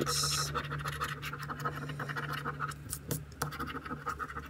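A coin scraping the scratch-off coating from a lottery scratcher ticket in quick, repeated strokes.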